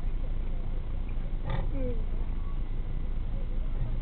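Car engine idling while stopped, heard inside the cabin as a steady low rumble. About a second and a half in comes a short voice-like sound that falls in pitch.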